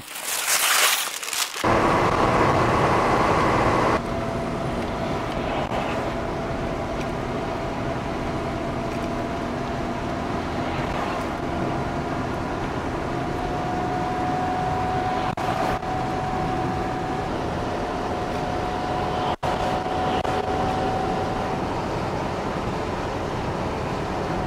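Steady road and engine noise inside the cabin of a moving Lada car, with a faint whine that slowly rises in pitch as the car gathers speed. A short burst of hiss comes at the very start.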